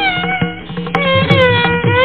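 Carnatic violin playing a sliding melodic phrase in raga Sindhu Kannada: the pitch glides down through the middle of the phrase and turns back up near the end, with mridangam strokes accompanying it.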